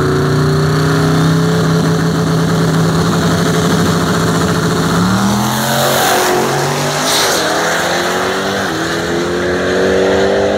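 Drag-racing car engines held at steady revs on the start line, then launching about five seconds in. Engine pitch climbs as the cars accelerate hard past, with a hiss as one goes by close, and drops at an upshift near the end.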